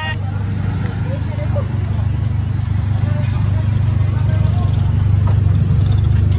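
Loud, steady low rumble of a roadside street scene, slowly growing louder, with faint voices in the background.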